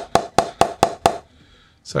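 Wooden mallet tapping the blade of a new Gray-Nicolls Alpha Gen 1.0 English willow cricket bat in quick even knocks, about four a second, stopping a little over a second in. The bat gives a slightly hollow tone, which the owner puts down to the concaving.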